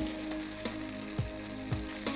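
Soft background music with steady held notes, over a faint sizzle of food cooking in a pan on a gas stove.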